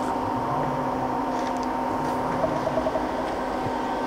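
Romi M-20 CNC lathe running: a steady, quiet machine hum with several steady tones, and a brief run of faint ticks near the middle.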